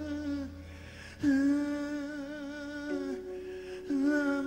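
Male jazz vocalist holding long wordless notes into a microphone: the first note falls away about half a second in, and after a brief dip a new note starts just over a second in and is held for about two seconds. A second steady tone joins near the end.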